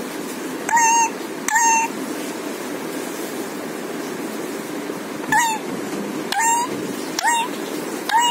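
A caged Alexandrine parakeet gives five short calls, each rising at the start and then holding, over a steady low background noise. Two come close together near the start and three more come about a second apart in the second half.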